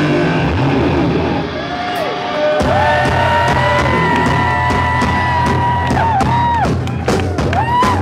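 A live punk rock band playing loud distorted electric guitars, bass and drums. The band drops back briefly, then comes in hard about two and a half seconds in, with long held guitar notes that bend in pitch, and drum and cymbal hits near the end.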